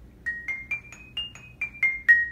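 Mallet keyboard percussion instrument played with two mallets: a short melody of quick single struck notes, about four a second, climbing in pitch and then stepping back down.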